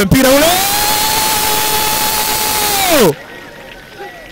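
A male football commentator's long drawn-out goal shout. It rises at the start, holds one high note for about two and a half seconds, then falls away and stops about three seconds in.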